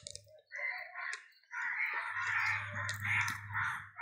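Harsh bird calls: a short call about half a second in, then a longer, uneven run of calls from about one and a half seconds, over a low hum.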